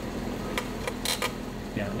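A few light, sharp clicks of spark plugs being handled in a metal spark-plug rack, over a steady low hum in the shop.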